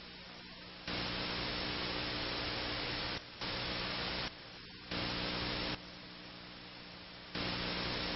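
Static hiss over a steady low hum, with four louder stretches of hiss that cut in and out abruptly.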